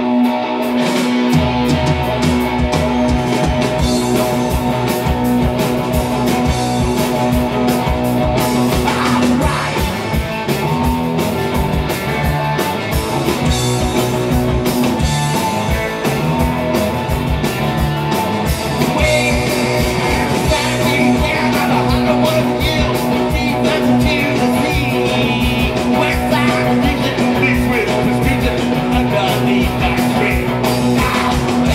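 Live garage-rock band playing: electric guitar alone at first, bass and drums coming in about a second and a half in, then a full band with a singer.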